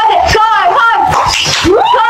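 Loud, high-pitched voices with gliding, arching pitch and no clear words.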